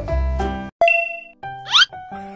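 Background music with a steady beat stops abruptly, and a single bright ding sound effect rings out and decays. A quick rising swoop effect follows, over a new, lighter tune.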